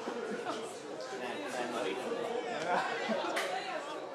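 Many voices of onlookers and players talking and calling over one another, with one sharp knock about three seconds in.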